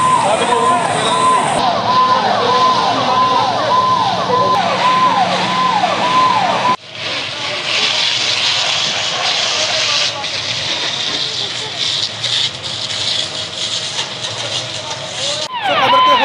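Fire engine siren sounding in repeated falling sweeps, about two a second. It cuts off abruptly about seven seconds in, giving way to a steady rushing noise with voices in it. The siren sweeps come back briefly near the end.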